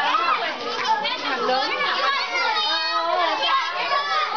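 Many children's voices at play, overlapping in continuous shouting and chatter.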